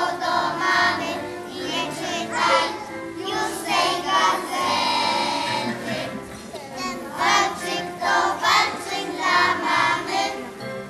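A group of young children singing a song together over instrumental accompaniment, with one long held note about halfway through.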